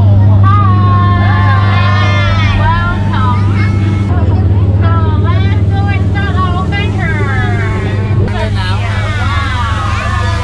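A tour-boat skipper talking into a handheld microphone, heard through the boat's loudspeaker, over the steady low hum of the boat's motor.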